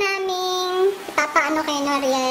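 A girl's voice singing in long drawn-out notes: a higher note held for about a second, then a lower held note from about halfway through.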